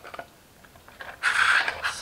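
Cardstock rustling and scraping for most of a second, about halfway through, as the paper ferris wheel is moved on its wooden dowel axle. A couple of light clicks come just before it.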